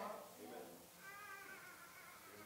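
Near-quiet room with a faint, high-pitched voice about a second in, a congregation member responding from the seats.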